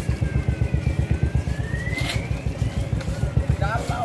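Motorcycle engine running close by with a rapid, even low throb. A voice comes in briefly near the end.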